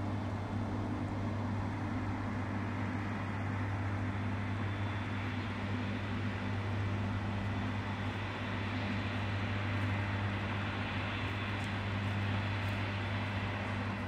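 Steady low hum under a constant hiss, with no change in level.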